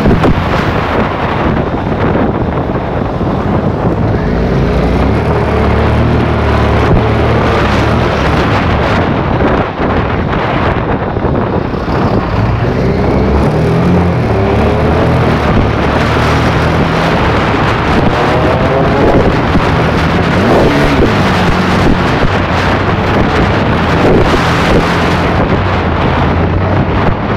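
Car engine and road noise under heavy wind buffeting on the microphone; the engine's pitch climbs several times, dropping back between climbs, as the car accelerates through the gears.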